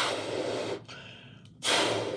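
A latex balloon being blown up by mouth: two long puffs of breath rush into it, the first lasting nearly a second and the second starting just before the end, with a quieter pause between them.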